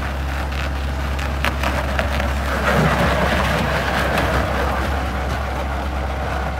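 Takeuchi TL130 compact track loader's diesel engine running steadily with a low drone as the machine drives across packed snow under load, with scattered clicks from the machine and its tracks.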